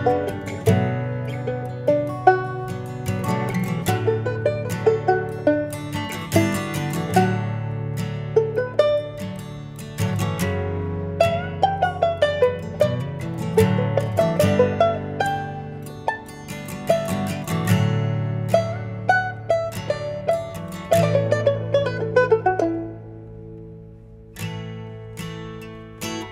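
Banjo fingerpicking a rapid instrumental break of plucked notes over sustained acoustic guitar chords. Near the end the picking thins to a few sparse notes.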